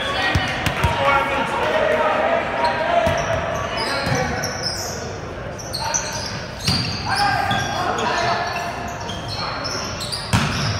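Indoor volleyball rally: sharp smacks of the ball being served, passed and hit, short high squeaks of sneakers on the hardwood floor, and players and spectators calling out, all echoing in the gymnasium.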